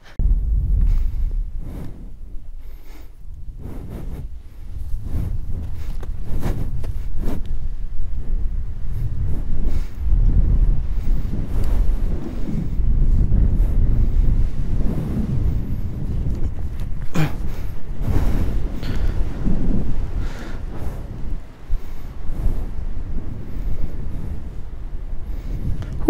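Wind rushing over the microphone of a paraglider pilot in flight, a loud, uneven low rumble that rises and falls with the gusts of airflow.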